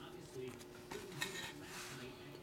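A stack of thick trading cards being handled and slid against one another, with a few faint light clicks and a short rustling swish near the end.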